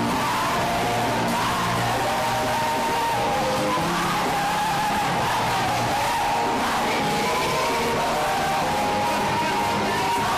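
Live gospel praise band playing loud and without a break, with electric guitar, keyboard and saxophone, and many voices singing along with wavering, bending notes.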